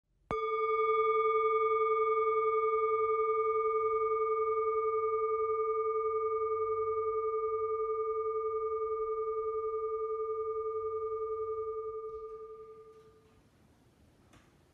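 A singing bowl struck once, its tone ringing on with a gentle wavering pulse and dying away after about twelve seconds.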